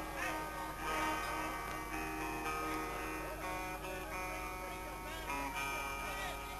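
A lone electric guitar picked and strummed, chords and single notes ringing on, changing about once a second.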